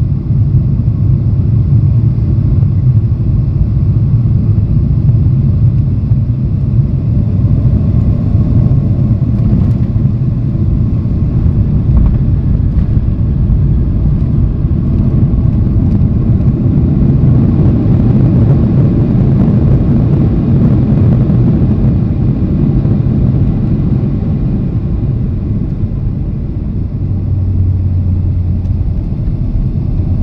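Cabin noise of a Boeing 737-800 landing, heard at a window seat over the wing: a loud, steady low rumble of its CFM56-7B engines, airflow and the airframe. A short thump about twelve seconds in marks the touchdown. The rumble swells during the rollout with the spoilers up, then eases off near the end as the jet slows.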